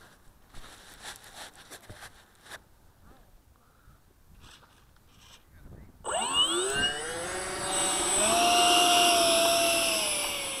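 Stinger 90 RC jet's electric ducted fan spooling up about six seconds in: a sudden, rising whine that settles into a loud, steady high-pitched whine as the model is throttled up on the runway. Before that, only faint rustling and clicks of handling.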